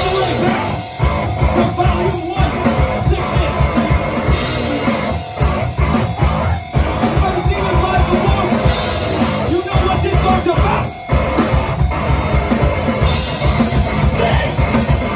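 Heavy band playing live: distorted electric guitar, bass and drum kit, with the vocalist shouting into the microphone. The music stops short a few times for a split second and comes straight back in.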